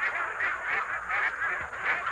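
A flock of domestic ducks (itik) quacking continuously, many calls overlapping.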